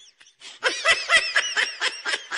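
Rapid, high-pitched laughter in a string of short ha-ha pulses, starting about half a second in and thinning out toward the end.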